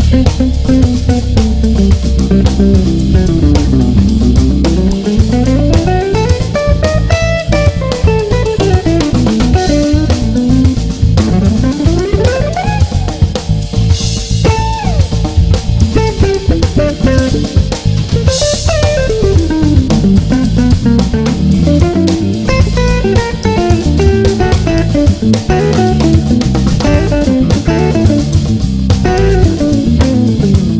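Electric guitar played through a restored 1960 EkoSuper amplifier, an AC30-type amp built by EKO, in fast single-note runs that climb and fall, with bass and drums behind it.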